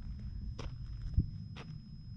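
Footsteps on desert sand and gravel, three steps about half a second apart, over a steady low rumble.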